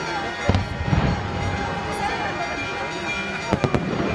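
Fireworks going off: heavy bangs about half a second and a second in, then three sharp cracks in quick succession near the end.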